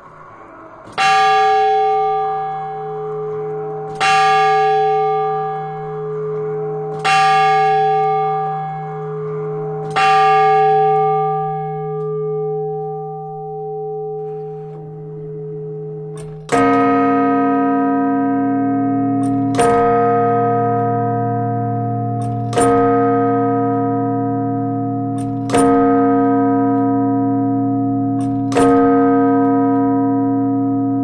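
Church tower bells struck singly at a steady pace, as a tower clock strikes. A higher bell strikes four times about three seconds apart, each stroke ringing out and fading. About halfway through, a deeper, louder bell takes over, striking at the same pace through to the end.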